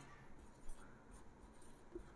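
Faint scratching of a marker pen writing on a whiteboard, in a few short strokes.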